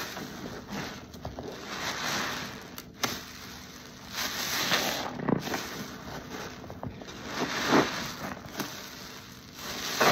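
Foam-soaked car wash sponge squeezed and kneaded by gloved hands in a basin of soapy water, squelching wetly through the suds. There are several squeezes a couple of seconds apart, the loudest about eight seconds in.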